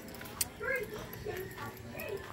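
Voices talking in the background in short, high-pitched phrases, with one sharp click a little under half a second in.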